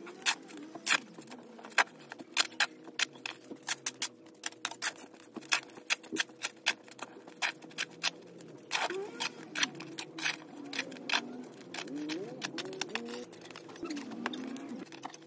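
A fast, irregular run of sharp ticks, several a second and loudest in the first half. From about two-thirds of the way in come short, low bird calls that rise and fall.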